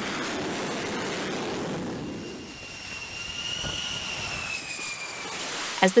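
Jet aircraft engine noise on a carrier flight deck: a steady rush for the first two seconds, then a high whine that slowly drops in pitch.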